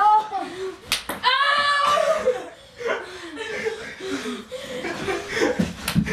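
A few sharp smacks of boys roughhousing, the loudest right at the start and another about a second in, with a loud high yell just after and excited voices and laughter through the rest.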